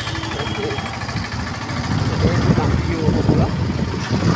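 Motorcycle running along the road, a steady low rumble of engine and wind on the microphone that grows louder about halfway through, with a voice talking over it.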